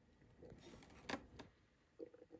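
Near silence, with faint small clicks and rustles as fingers handle thread and parts at the needles of a Janome three-needle coverstitch machine during threading. The sharpest click comes about a second in.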